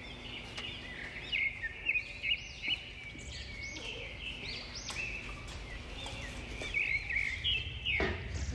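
Small birds chirping, many short high calls overlapping, loudest in the first three seconds.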